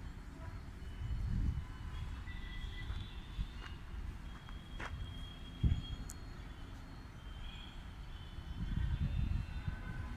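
Outdoor ambience: an uneven low rumble with faint, short, high chirping tones and a couple of soft clicks near the middle.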